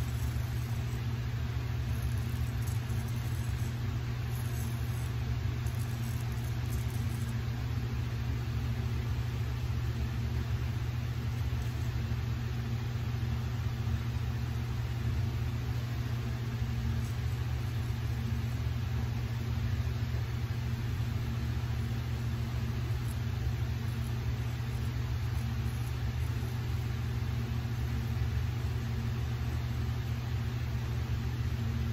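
A steady low mechanical hum, with a few faint high scratches a few seconds in.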